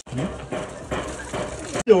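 Indistinct voices at a moderate level over background noise, broken by two abrupt cuts.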